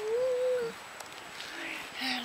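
A child's voice holding one long wordless note that wavers slightly in pitch and stops about two-thirds of a second in, followed near the end by a short, lower vocal sound.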